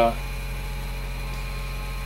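A steady low electrical hum, mains-type, at an even level after the tail of a spoken 'uh'.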